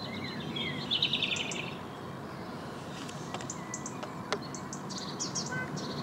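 Small birds singing outdoors: a fast chirping trill in the first couple of seconds, then scattered short, high chirps, over a steady background hiss. A single sharp click comes about four seconds in.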